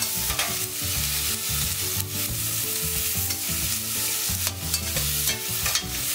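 Onions and roasted butternut squash and apple sizzling in hot coconut oil in a stainless steel saucepan while being stirred, with a few short scrapes and knocks against the pan.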